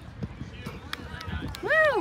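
Soft thuds and clicks of players running and kicking a soccer ball on artificial turf, then a spectator's loud rising-and-falling whoop, "Woo!", near the end, cheering a goal.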